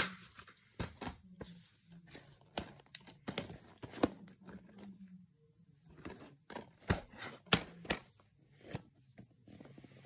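Plastic DVD cases and discs being handled: a run of sharp irregular clicks, taps and rustles, with a short quiet pause about five seconds in.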